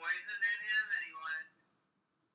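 A woman's wordless, drawn-out vocal sound of disgust, pitched and wavering, lasting about a second and a half before stopping.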